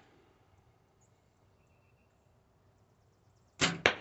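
A 1986 Bear Whitetail 2 compound bow is shot from a caliper release near the end: a sharp snap of the string, then about a quarter second later a second sharp hit as the arrow strikes the target.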